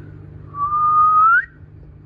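A person whistling one held note for about a second, rising in pitch at the end.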